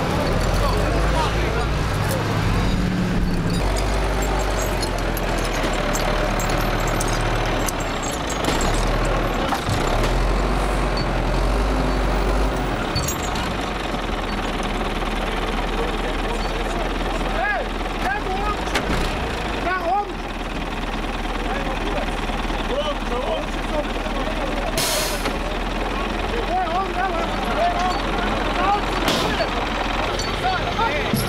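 A heavy vehicle's engine runs with a low drone for roughly the first thirteen seconds, then drops away, under steady chatter from a crowd of people talking.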